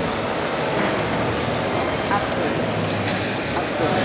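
Steady background din of a large exhibition hall, with distant indistinct voices.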